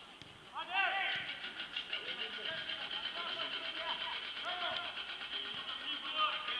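Several voices shouting and calling across an open football pitch during play. The overlapping calls start about half a second in.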